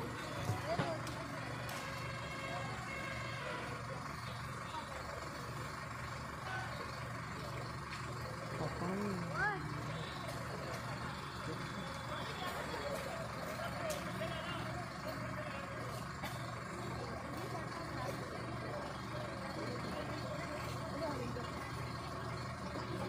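Tractor engine running with a steady low hum, over faint background voices.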